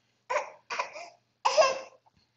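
A baby babbling in three short bursts.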